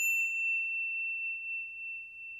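A high, pure electronic ding ringing on and fading slowly, the sound effect of an outro logo sting.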